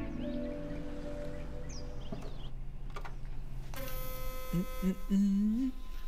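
A man humming a tune while brushing his teeth, over a steady electric buzz that starts about four seconds in. A few faint high chirps come earlier.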